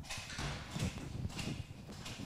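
Footsteps on a hard floor, several steps about half a second apart, passing close by.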